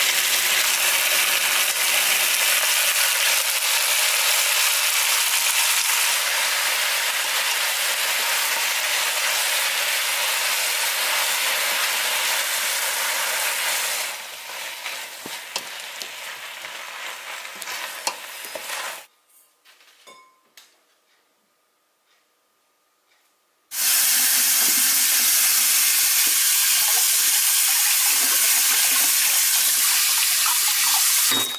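Cut seaweed (miyeok) sizzling steadily as it is stir-fried in sesame oil in a stainless steel pot, then going quieter for a few seconds with wooden-spatula knocks and scrapes as it is stirred. After a few seconds of near silence, a tap runs steadily over diced beef in a mesh strainer.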